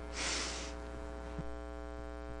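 Steady electrical mains hum in the meeting's microphone and sound system, with a short hiss about half a second long right at the start.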